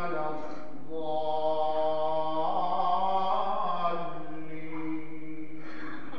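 Male voice in Islamic liturgical chanting, holding long, drawn-out melodic notes that waver in pitch, with a short breath-break before the first second.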